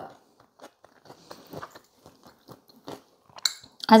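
A person chewing a mouthful of cooked corn kernels with melted cheese, close to the microphone: a run of small, irregular wet mouth clicks, with one short sharp click near the end.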